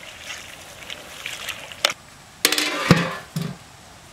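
Metal lid set down onto a metal cooking pot: a clatter about two and a half seconds in, a sharp clank, then brief metallic ringing that dies away. Before it, light crackling and clicking from the pot over the wood fire.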